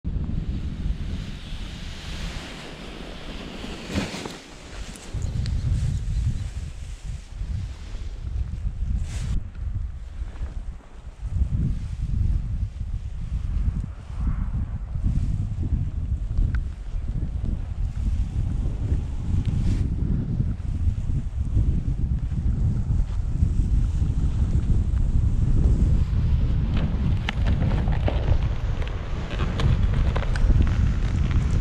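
Wind buffeting the camera microphone in uneven gusts, a low rumble that swells and drops, with a few brief knocks.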